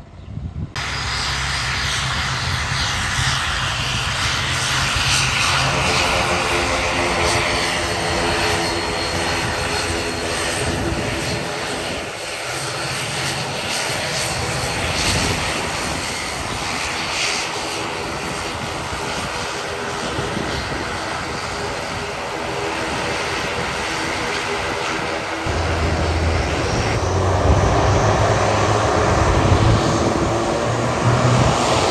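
ATR 72-500 turboprop airliner's engines and propellers running as it taxis, a loud steady propeller drone with a layered hum. It starts abruptly about a second in and grows louder and deeper near the end.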